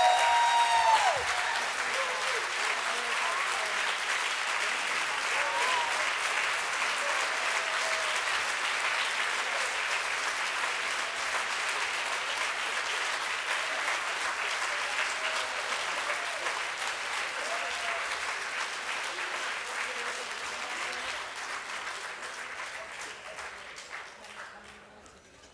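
A large audience applauding steadily, with a few voices calling out in the crowd. The clapping slowly dies away over the last few seconds.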